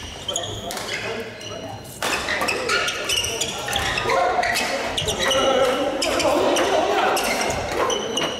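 Badminton doubles rally in a hall: rackets striking the shuttlecock in quick exchanges, shoes squeaking and feet thudding on the wooden court. Voices grow louder from about two seconds in.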